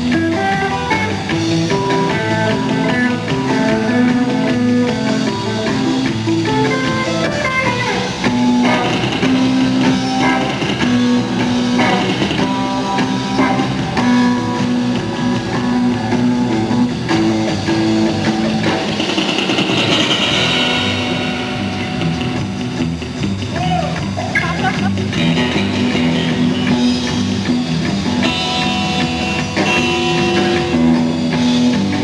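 Live surf-rock instrumental played on electric guitars over electric bass and a drum kit, with a steady, driving beat.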